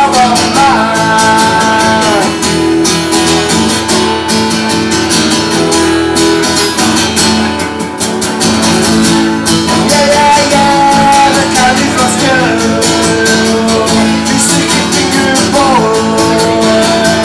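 Live band music: strummed guitar with a singing voice, continuous and loud.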